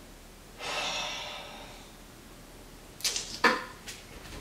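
A breathy whoosh about half a second in that fades over a second, then a quick cluster of sharp clicks and knocks near the end as an interior door is handled.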